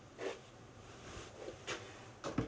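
Faint, brief rustles of a person moving close to a phone's microphone: one shortly after the start, a fainter one past the middle, and a sharper one near the end.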